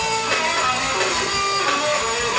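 Rock band playing live on a loudspeaker system: electric guitar, bass guitar and drums, heard from among the audience.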